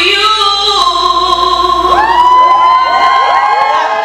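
A woman singing through a handheld microphone, holding long notes, with several more voices sliding up and joining about halfway through.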